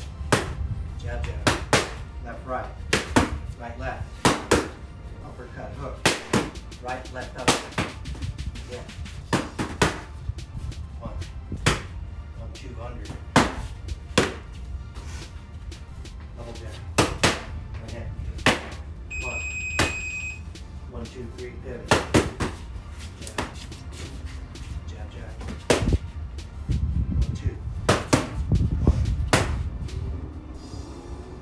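Boxing gloves striking handheld punch paddles in combinations: sharp slaps, often in quick pairs or triples, with short gaps between them. A single electronic beep, about a second long, sounds near the middle.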